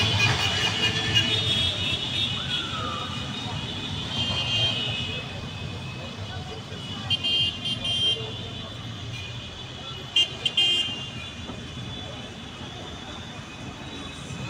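Street traffic of cars and motorcycles with vehicle horns honking over it, several held or repeated together, with short sharp horn blasts about seven and ten seconds in.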